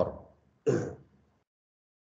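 A man clears his throat once, briefly, just under a second in, right after his last word trails off.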